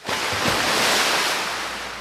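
A rush of noise, like a breaking wave, that swells for about a second and then slowly fades.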